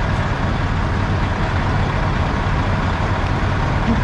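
Semi-truck diesel engine idling: a steady low rumble.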